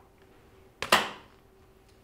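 A sharp double clack about a second in, ringing out briefly, as electrical switchgear closes to power up a 30 horsepower variable frequency drive.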